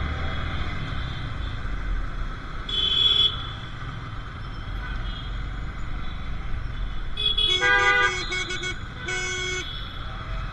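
Vehicle horns honking in traffic over a steady low rumble of riding and wind noise: one short toot about three seconds in, then a quick run of several short honks near eight seconds and a longer honk just after nine seconds.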